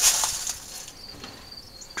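Insects, crickets by the sound of it, chirring in a steady high-pitched tone, with a short breathy hiss at the very start.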